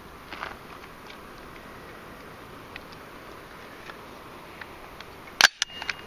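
Faint steady background with a few soft ticks, then near the end one sharp metallic click from handling an AR-15 rifle, followed by a few lighter clicks.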